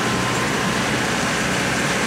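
Jacto K3000 coffee harvester running steadily while harvesting: an even drone of engine and machinery with a hiss over it, at a constant level.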